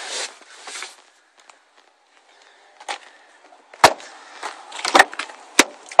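Faint rustling, then a few short, sharp clicks and knocks, the loudest about four seconds in: handling and movement noise by the car's open front door.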